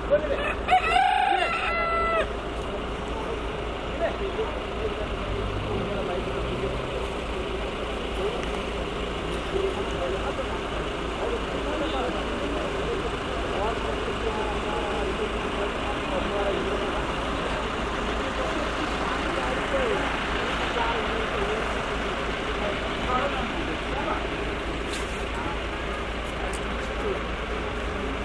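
A rooster crows once, loud and drawn out, in the first two seconds. After that comes a steady outdoor background with faint, scattered voices.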